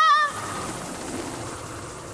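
A cartoon character's high, wavering yell ends about a third of a second in. It gives way to a steady whirring hiss that slowly fades as she flies off on spinning helicopter fingers.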